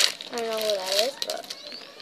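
A child's wordless vocal sound lasting under a second, dipping and then rising in pitch, starting about a third of a second in. A short click comes at the start.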